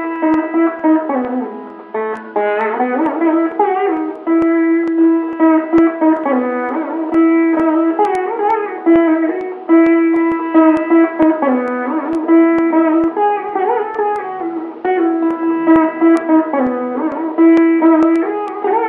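Instrumental music: a plucked string instrument plays a melody with sliding notes over a steady held drone note.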